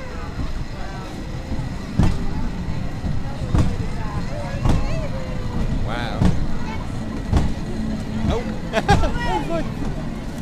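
Small amusement-park passenger train running past on its rails: a steady low rumble with a clunk about every second and a half.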